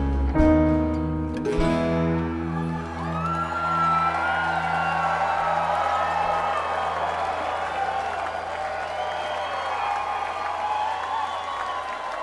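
Live bluegrass band of banjo, mandolin, guitar, upright bass, dobro and piano playing its last plucked notes about a second and a half in, then letting a final low chord ring out and fade. A cheering, whistling crowd is heard under it.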